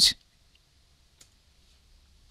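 A single faint computer mouse click about a second in, over quiet room hum: the click on the browser's reload button.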